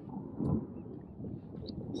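Low wind rumble on the microphone, swelling briefly about half a second in, with a few faint clicks.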